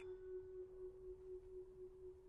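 Faint background music: a single held note, steady and unchanging, with no other instruments over it.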